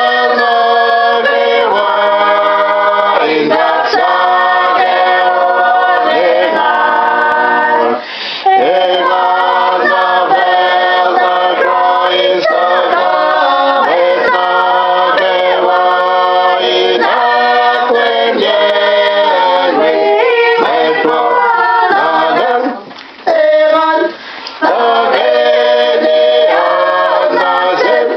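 Mixed choir singing a Kosraean hymn a cappella in four-part harmony (soprano, alto, tenor, bass), in long held phrases with short breaks about 8 seconds in and again near the end.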